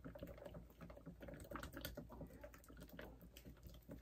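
Faint, irregular scraping and tapping of a stir stick against the inside of a plastic mixing cup as thick epoxy tinted with mica powder is stirred.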